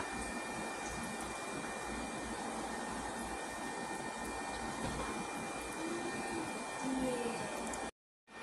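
Steady fan-like rushing background noise, with a few faint, brief pitched sounds a little before the end.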